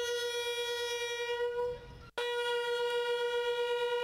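A brass instrument plays two long held notes on the same pitch, with a brief break about two seconds in, as a musical interlude.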